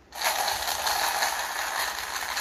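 Homemade maraca, a plastic bottle with buttons inside, shaken hard, the buttons rattling continuously against the plastic. It starts a moment in.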